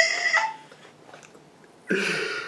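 A man stifling laughter behind his hand: a short, high-pitched squeak of held-back laughter at the start, about a second of quiet, then a breathy burst of laughter near the end.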